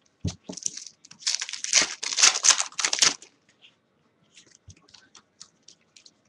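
Foil wrapper of a baseball card pack being torn open and crinkled, in a dense run of rustling from about one to three seconds in, followed by a few faint ticks of cards being handled.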